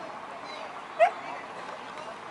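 A corgi gives a single short, sharp bark about a second in, rising in pitch.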